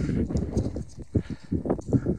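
Footsteps crunching on loose scree stones, a few uneven steps, with handheld handling and wind noise underneath.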